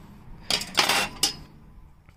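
Metal wire kitchen utensils clinking and rattling as they are handled and set down on a metal floor: a short clatter in the middle, ending in one sharp click just past a second in.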